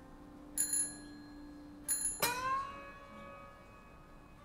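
Two short, high, bell-like metallic strikes about a second apart, then a louder metallic strike whose ringing tones bend in pitch and settle as they die away, over the tail of a fading piano chord. Sparse improvised piano-and-percussion music.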